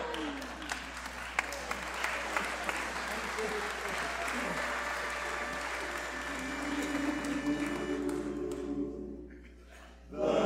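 Audience applauding after a comedy skit's punchline, the clapping dying away about nine seconds in.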